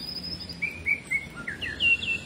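A songbird singing: a high whistle that sweeps up at the start and holds, then a run of short, lower chirping notes and a few quick upswept notes near the end.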